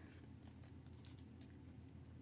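Near silence with a low steady room hum and faint rubbing and rustling as a cardboard picture book is handled and held up.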